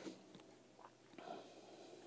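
Near silence, with a few faint clicks and a soft rustle as steel piano wire is hooked around the bridge pins of a console piano.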